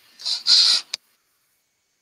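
A brief hiss, then a click just before a second in, after which the audio drops to dead silence: a participant's microphone being muted in a video call to stop audio feedback.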